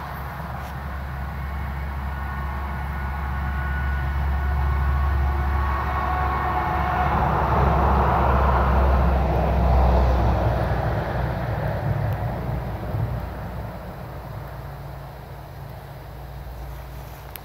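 Low rumble of a passing vehicle, building to its loudest about eight to ten seconds in and then fading away, with a few faint thin high tones over it as it approaches.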